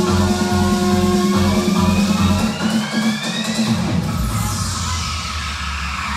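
Vietnamese vinahouse remix dance music with a pulsing bass beat under held synth tones. About halfway through the beat thins and a rising sweep climbs, then a noisy swoosh falls in pitch toward the end: a build-up into the next section of the mix.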